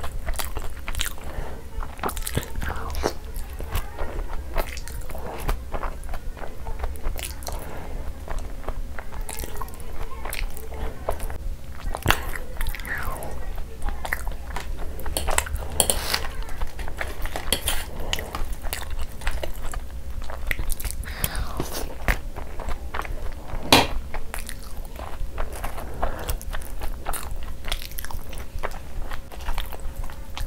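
Close-miked eating: repeated bites and wet chewing of chicken in thick curry gravy and soft luchi, with irregular mouth smacks, clicks and occasional crunches. One sharper click comes about three-quarters of the way through, over a faint steady hum.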